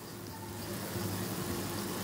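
Quiet room tone with a steady low electrical or fan-like hum.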